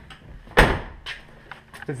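Chevrolet Suburban's door shut once with a sharp thud about half a second in, followed by a few faint clicks.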